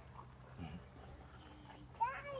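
Faint goat bleating over a quiet background hum.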